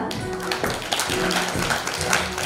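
An audience clapping in a dense patter of claps, with steady background music playing underneath.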